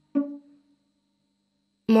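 A single plucked string note, sharp at the start and dying away within about half a second.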